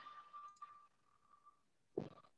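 Near silence on a video call: only a faint, thin tone that fades out over the first second and a half.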